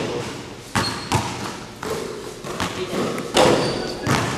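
A basketball thudding on the gym floor: about five irregular bounces, each echoing briefly in the hall.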